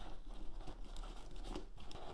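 Soft rustling and small irregular scrapes and ticks of nylon fabric and padded dividers as a GoPro is pushed into a camera sling bag's compartment.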